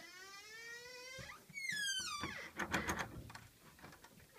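A door opening on squeaky hinges: a long rising creak for just over a second, then a second, higher squeal that climbs and drops, followed by a few knocks and clicks near the end.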